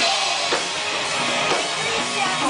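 Live rock band playing, the drum kit prominent, with drum strikes standing out about half a second and a second and a half in.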